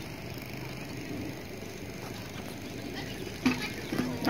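Faint steady outdoor background noise, with one short sharp knock near the end.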